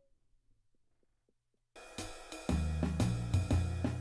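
Near silence, then about two seconds in a medium-swing jazz tune starts: drum kit with cymbals and hi-hat, joined half a second later by steady bass notes.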